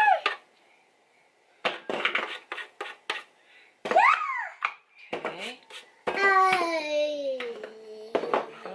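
A toddler vocalizing: a short rising-and-falling squeal about four seconds in, and a long, slowly falling babbling cry near the end. Between these come short scraping and clattering strokes of a metal box grater.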